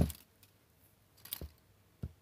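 The tail of a clunk as a crimping tool is set down on a wooden workbench, then near silence. About a second and a half in comes a brief, light metallic rattle as small loose crimp terminals are handled on the bench.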